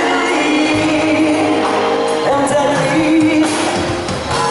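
Live pop music: a male singer singing into a handheld microphone over amplified pop accompaniment, holding long notes.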